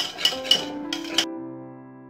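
A wire hand whisk clinks against a stainless-steel bowl several times as cream is whipped, stopping a little over a second in. Soft background music with held notes comes in under it and carries on alone.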